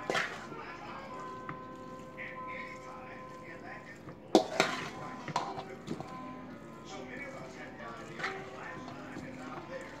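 A spoon scraping and clinking against a stainless steel mixing bowl as potato salad is stirred lightly, in scattered knocks with the sharpest one about four and a half seconds in. Faint background music plays underneath.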